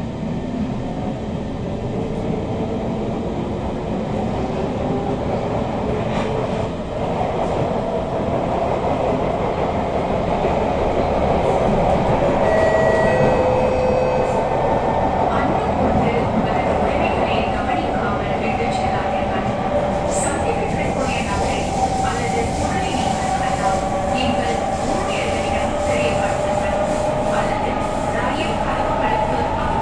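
Inside an SMRT C151 metro car as it gathers speed: the traction motors give a rising whine in several tones over the steady rumble of wheels on rail. The whine levels off about halfway through as the train settles to running speed.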